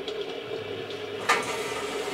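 Crackling and hissing of a fire sound effect from an animated video, heard through loudspeakers in a room, with one sharp crack a little after a second in.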